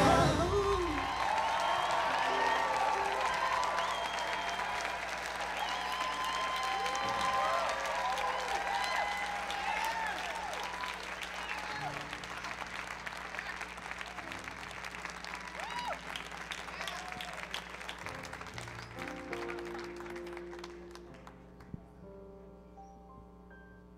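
Audience applauding and cheering, with many whoops and shouts, just as a vocal group's last sung chord dies away; the applause slowly fades out.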